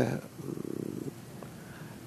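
A man's drawn-out syllable ends, then a brief, low, rattling creak of the voice, a hesitation sound made in the throat, lasting under a second.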